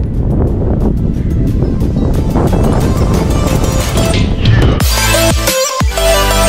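Wind rushing over the camera microphone of a moving bicycle, with music faintly under it. About five seconds in the wind noise cuts off and electronic music with a steady beat takes over.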